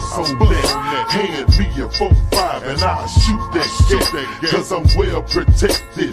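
Slowed-and-chopped hip hop track: a slowed rap vocal over a beat with heavy bass kicks and a steady high tick of hi-hats, about two to three a second.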